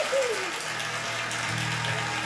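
Studio audience laughing and applauding after a punchline, heard through a television speaker. A short falling vocal cry comes at the start, and low sustained music notes come in under the crowd noise after about half a second.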